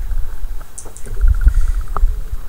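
Low rumbling and thumps from a phone being carried and moved by hand, with a faint rapid creaking squeak in the second half and a click at the end.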